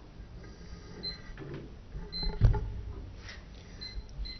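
Quiet meeting-room tone in a pause, with a single dull thump about two and a half seconds in and a few brief, faint high squeaks.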